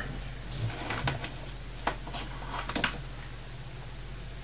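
Faint handling noises from a power supply circuit board held in the hands and touched with a fingertip: a handful of short clicks and rustles, over a low steady hum.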